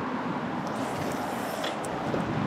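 Steady wind noise on the camera microphone, an even rushing hiss with no distinct events.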